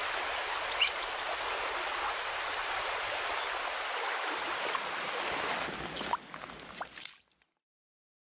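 Shallow river water rushing and gurgling right at a camera held at the surface. The water sound thins about six seconds in, with a few small splashes, and cuts off a second later.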